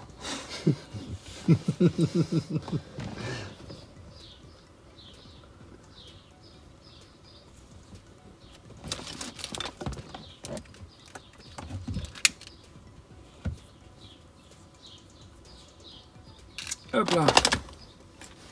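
A man laughs for about three seconds. Then the cabin goes quiet except for a few soft clicks and rustles of wire plugs being handled, with faint bird chirps repeating in the background.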